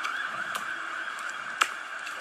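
Steady background hiss, with one sharp click about one and a half seconds in.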